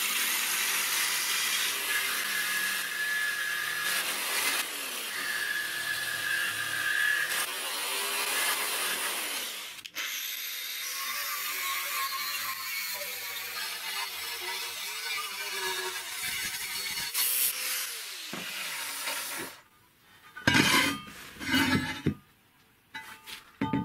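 Electric jigsaw cutting through a steel profile tube clamped in a vise, steady for about ten seconds. Then an angle grinder cutting the steel with a pitched motor whine for about nine seconds. A few sharp metal knocks follow near the end.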